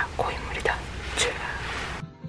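A woman speaking in a low, half-whispered voice inside a car, over a steady low hum.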